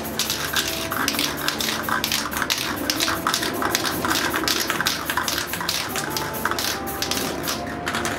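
Aerosol spray can spraying black paint in quick short hissing bursts, about five a second.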